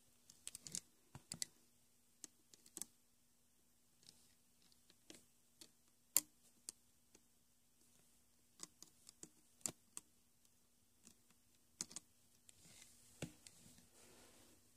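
Faint, irregular clicks and ticks of a Rainbow Loom hook and rubber bands against the loom's plastic pins as bands are hooked and pulled down, with short gaps between them.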